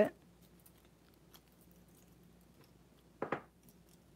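Metal bracelets being handled and worked off a wrist: faint small clicks, then a short, louder clatter a little after three seconds in.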